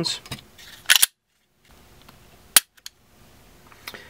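A few short mechanical clicks from handling a striker-fired pistol and a digital trigger pull gauge, the loudest a single sharp click about two and a half seconds in, followed by a fainter one.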